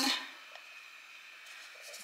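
A quiet room with faint handling noise from a cut-open plastic lotion tube being worked by hand, and one small click about half a second in.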